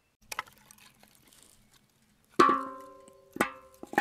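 Split firewood sticks being laid into a metal fire bowl: a light click, then three sharp knocks about a second apart, the first the loudest, each leaving the bowl ringing briefly with a metallic tone.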